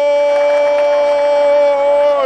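A football commentator's long, loud "goal" shout held on one steady note, marking a converted penalty that levels the score.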